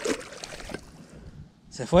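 Water splashing around hands in shallow lake water as a carp is released and swims off; the splashing is loudest at the start and dies down. A man's loud voice comes in near the end.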